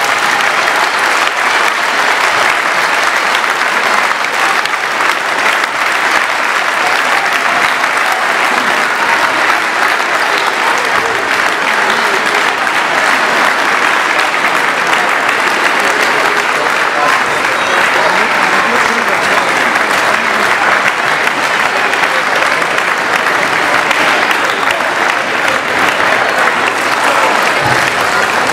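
A crowd applauding in a large hall: a long, unbroken round of clapping at a steady level.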